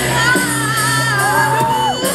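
Live amplified rock band playing, with electric guitars, bass and drums under a female lead vocal, heard in a large hall; the crowd shouts along over the music.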